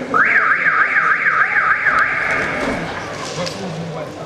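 A high, shrill whistle warbling up and down, swooping about four times a second for around two seconds, then stopping.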